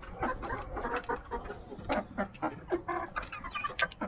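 A flock of Rhode Island Red chickens clucking softly while they feed, with many quick, sharp taps from pecking.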